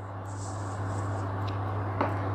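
Steady low electrical hum and fan noise from an induction cooktop heating a saucepan of water, with a faint high hiss in the first second and a small click about one and a half seconds in.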